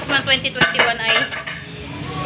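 Dishes and cutlery clinking: a quick run of sharp clinks between about half a second and a second and a quarter in, with a woman talking.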